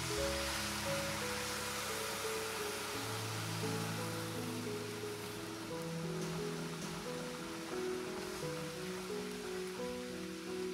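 Oat milk sizzling and bubbling as it hits and simmers in a hot pan of sautéed button mushrooms, a steady hiss that is loudest at the start, with background music of held notes over it.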